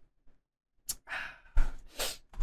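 A man lets out a breathy sigh about a second in, just after taking a swig of beer, followed by a louder thump.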